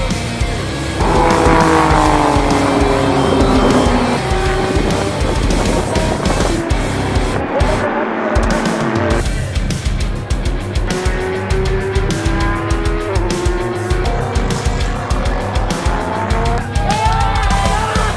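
Racing car engines at high revs, one dropping in pitch as it passes early on and another holding steady later, mixed under background music with a steady beat.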